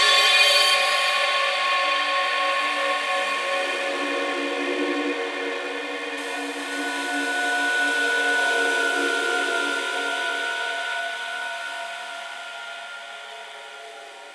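Electronic music: held synthesizer pad chords with no drums or bass, slowly fading out.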